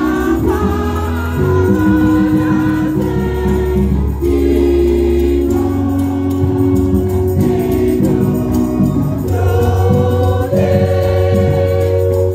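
A women's church choir singing a gospel song together in harmony, with long, steady low bass notes underneath that change every few seconds.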